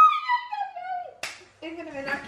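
A woman's high-pitched squeal of triumph at winning rock-paper-scissors, held and then falling in pitch, followed about a second in by a single sharp smack of hands.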